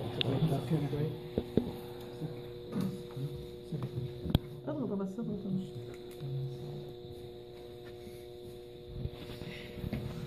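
Indistinct background voices over a steady electrical hum, with a few sharp clicks; the voices die away about six seconds in, leaving mostly the hum.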